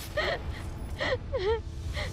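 A young woman crying, with two gasping sobs about a second apart, each breaking into a short, wavering cry.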